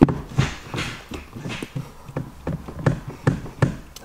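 Gear lever of a Hyundai i30 N with a newly fitted short shifter being worked through the gates, making a string of sharp clicks and clunks. The shift is stiff, and something is blocking fifth and sixth gear.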